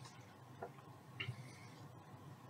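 Quiet room tone with a faint click about half a second in and a brief, light scratching sound a little past one second.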